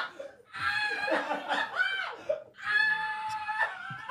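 Men laughing hard in high-pitched bursts broken by breaths, with one long, held high squeal of laughter about two-thirds of the way in.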